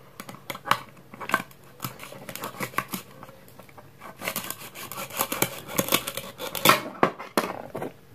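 Plastic toy knife sawing through a velcro-joined plastic toy kiwi on a plastic cutting board: a run of scratchy clicks and crackles as the velcro pulls apart, densest and loudest in the second half.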